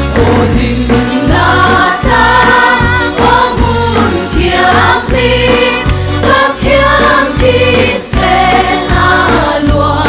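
Live Christian worship song: a woman singing lead over a group singing along, with band accompaniment and sustained deep bass notes.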